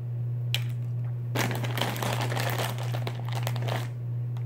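Plastic packaging of a pair of swim goggles crinkling as it is handled, for about two and a half seconds starting about a second and a half in, after a single click. A steady low hum sits underneath.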